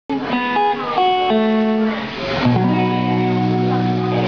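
Live electric blues band playing, with electric guitar lead lines of short single notes and a few bent notes, settling about halfway through into one long held note.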